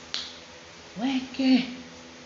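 A tearful woman's voice: a sharp sniff or intake of breath, then about a second in a short wordless moan in two joined parts, its pitch rising and then falling.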